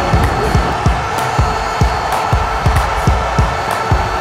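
Background music with a steady kick-drum beat, about two beats a second, and light high ticks between the beats.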